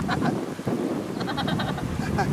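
A voice making a rapid, quavering call, about ten pulses a second on one pitch, in two runs: the first stops just after the start, the second begins a little past one second in. Wind rumbles on the microphone underneath.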